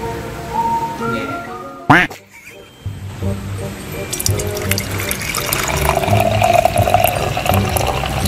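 Engine oil pouring from a bottle through a plastic funnel into a scooter's engine during an oil change, a trickling, splashing stream that begins about four seconds in, over background music with a steady beat. A loud whoosh just before two seconds in marks an editing transition.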